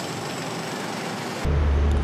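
Busy city street ambience: a steady hiss of traffic noise, then about one and a half seconds in, a sudden switch to a louder, steady low rumble of road traffic close to the microphone.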